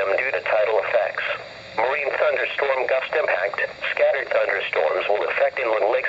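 Continuous speech: a NOAA Weather Radio broadcast voice reading the hazardous weather outlook, heard through a weather radio's small speaker with a thin, narrow-band sound and a brief pause between phrases about a second and a half in.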